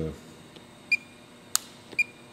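Fluke 1587 insulation multimeter beeping: two short electronic beeps about a second apart, with a sharp click between them, during a 1000-volt insulation test on a piezo injector stack.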